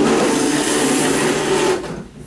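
Chairs scraping and feet shuffling on the floor as a group of children stand up from their tables, a dense, continuous noise that dies away near the end.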